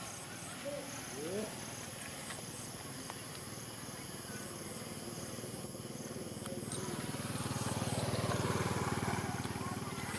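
Outdoor ambience with a steady background hiss and two short rising squeaks about a second in. A low rumble swells and fades over the last few seconds.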